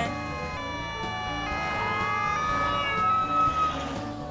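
Cartoon emergency-vehicle siren: a slow wail that falls, rises to a peak about three seconds in, and drops away near the end. Under it plays a short music cue whose chords change about once a second.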